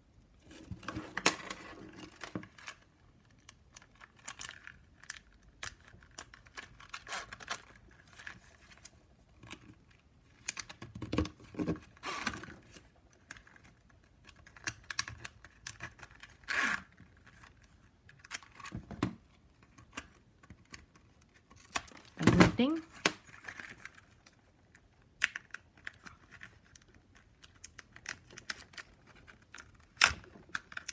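Plastic strapping-band strips and a small metal key ring being handled: scattered clicks, rustles and scrapes as the ring is fitted and the stiff strips are threaded and pulled through a woven piece.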